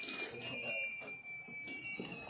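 Multimeter continuity buzzers giving steady, high-pitched beeps, two or more tones overlapping. One tone cuts off near the end.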